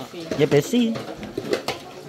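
Hand-washing dishes in a metal basin: plates and bowls clink together a few times in the second half, with water from a garden hose pouring into the basin.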